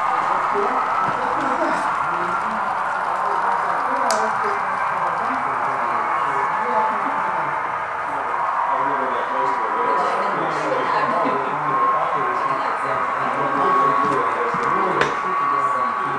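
S-gauge American Flyer model locomotive running steadily on the layout: a motor whine that drifts slightly in pitch over the rumble of wheels and gears on the track.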